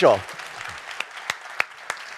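Audience applauding, with sharper single claps standing out about three times a second.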